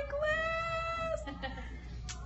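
A woman's voice holding a high, drawn-out note for about a second at a nearly steady pitch, then breaking off.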